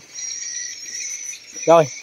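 Insects chirring in a steady high-pitched drone, with a short spoken word near the end.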